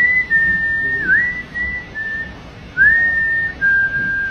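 A man whistling a tune through pursed lips: a single clear high note held for long stretches, with short dips and upward slides between phrases and a brief pause a little past halfway.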